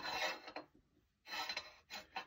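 Two short rubbing scrapes, one at the start and one past the middle, as a golf club is shifted and settled on a swing weight scale.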